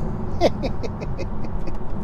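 Steady road and tyre rumble inside the cabin of a Tesla Model 3 Performance on the move, with no engine note. About half a second in, the driver gives a few short falling vocal sounds, like a brief laugh.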